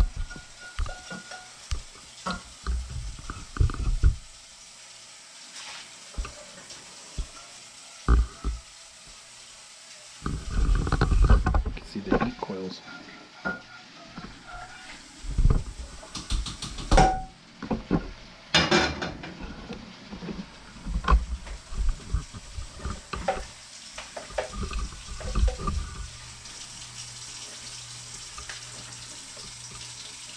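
Irregular knocks, clanks and scrapes of a pan and utensils while cooked pizza meat is drained at a kitchen sink, with some running water. The clatter is densest in two stretches through the middle, then tails off near the end.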